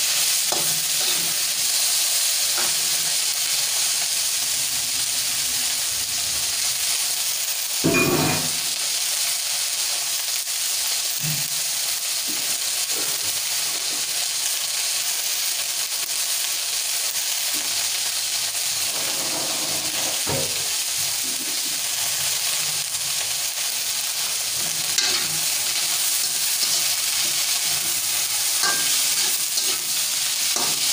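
Yardlong beans sizzling steadily as they stir-fry in a metal wok, with a slotted metal spatula scraping and knocking against the pan as they are tossed. The sharpest knock comes about eight seconds in.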